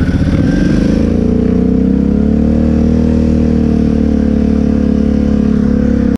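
Engine of the off-road vehicle carrying the camera on a sand trail, its pitch climbing a little in the first couple of seconds as it picks up speed, then running steadily.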